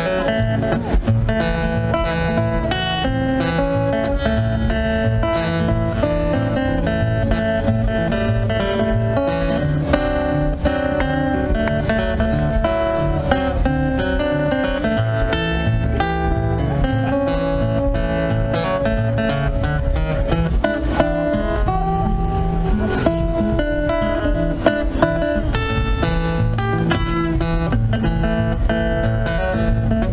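Solo acoustic guitar playing an instrumental break in a country-blues song, a steady run of picked notes over a repeating bass line.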